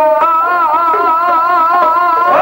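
Dhadi folk music played on sarangi and dhadd hand drums, with one long wavering note held through.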